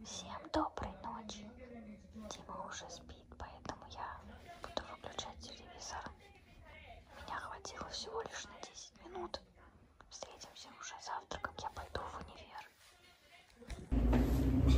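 Soft whispering, speech kept under the breath, with small clicks and rustles.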